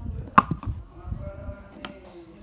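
Handling of a clear plastic slime tub: a sharp plastic click about half a second in, two lighter taps just after, and another click near the end, over low rumbling handling noise.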